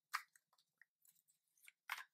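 Near silence broken by a few faint, short clicks and ticks of a tarot card deck being handled and shuffled in the hand, a small cluster coming near the end.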